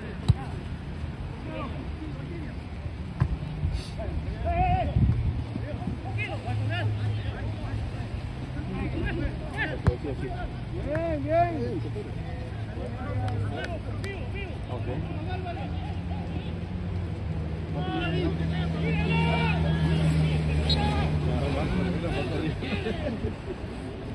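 Players' voices calling out across an outdoor soccer pitch, short shouts scattered through, over a steady low rumble. A few sharp single knocks, the clearest just after the start, are the ball being kicked.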